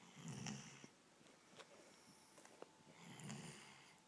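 A sleeping dog snoring softly: two snores about three seconds apart, one just after the start and one near the end.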